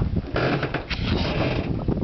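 Wind rumbling on the microphone, with a noisy scraping and shuffling of a large fish being shifted over ice in a plastic cooler, strongest from about half a second in to near the end.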